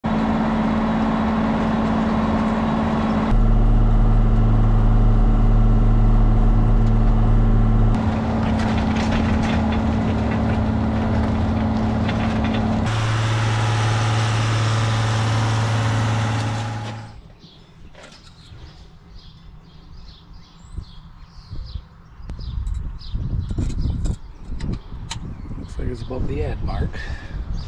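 John Deere 7810 tractor's six-cylinder diesel running steadily under load while moldboard plowing, heard in several cut-together clips with the drone shifting in pitch at each cut. About 17 seconds in the engine sound gives way to quieter clicks and knocks of handling at the open engine compartment.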